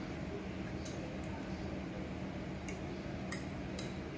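Metal forks clinking faintly against a ceramic plate a few times as they cut into a piece of braised beef, over a steady low room hum.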